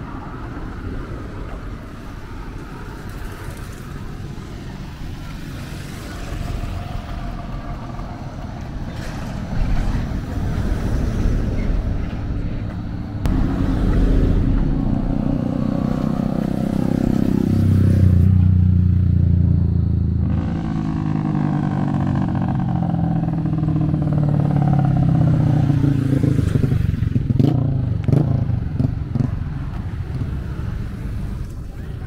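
Road traffic passing close by: small motorcycles and cars drive past one after another. It gets louder in the second half, and the engine notes drop in pitch as each vehicle goes by.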